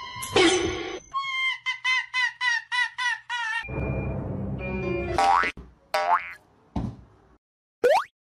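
Cartoon sound effects: a loud boing just after the start, then a quick run of about eight short springy blips, then a noisy stretch and a few fast pitch slides.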